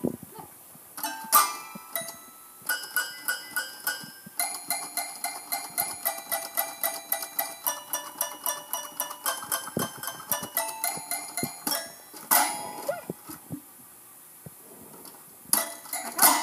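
Toy piano played one key at a time, a steady string of separate ringing notes at about three or four a second, followed by a louder jumble of notes struck with the hands near the end.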